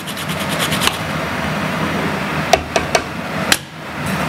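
Carrot being grated on a small handheld grater, a steady rasping of quick strokes, with a few sharp clicks about two and a half to three and a half seconds in.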